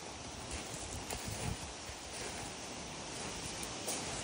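Footsteps on a gravel path: a few soft, irregular crunches over a steady outdoor background hiss.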